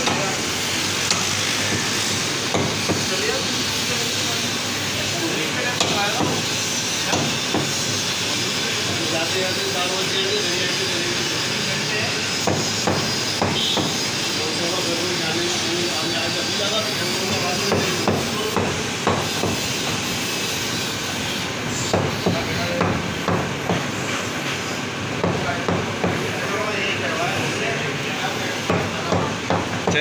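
Butcher's cleaver chopping mutton on a wooden tree-trunk block: repeated sharp strikes, coming in quicker runs of two or three a second near the end, over a steady background hiss and faint voices.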